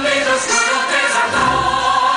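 A stage-musical song: a chorus of voices singing together with musical backing.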